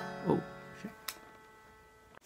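A single chord strummed on a capoed Fender Stratocaster electric guitar, ringing and fading, then cut off just before the end. A short click sounds about a second in.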